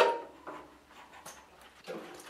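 Motorcycle fuel tank knocking once sharply as it is lifted free of the frame, followed by faint rubbing and handling noises as it is raised away.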